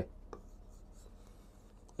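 Faint scratching and light tapping of a stylus drawing on an interactive whiteboard screen.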